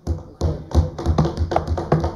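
Members banging on their wooden desks with their hands, a quick irregular run of overlapping thuds: the desk-thumping by which a Westminster-style chamber shows approval of a speaker's point.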